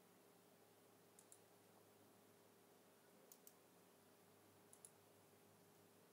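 Near silence with a faint steady hum, broken by three faint computer-mouse clicks, each a quick double tick.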